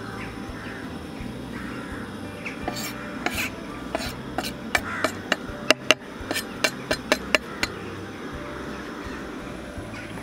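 Kitchen knife scraping chopped garlic off a wooden cutting board into a frying pan. A few seconds in comes a quick, irregular run of sharp taps, like knife and board knocking against the pan.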